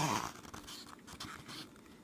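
Faint rustling and handling of a picture book's paper pages, after a brief sound that falls in pitch right at the start.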